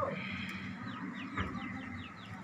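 Birds chirping in a quick run of short falling notes, with a single sharp click about one and a half seconds in.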